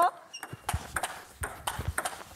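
A fast table tennis rally: the celluloid-type plastic ball clicks off the rackets and bounces on the table several times a second, with low thuds of the players' feet on the floor.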